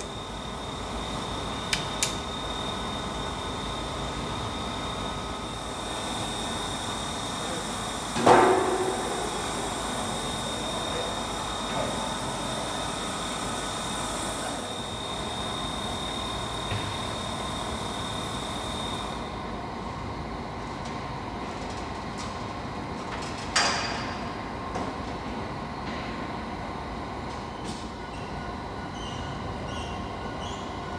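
Steam locomotives standing in steam in a roundhouse, giving a steady hiss with a thin high tone that cuts off about two-thirds of the way through. Two loud metallic clanks ring out in the shed, the louder about a quarter of the way in and another about three-quarters through.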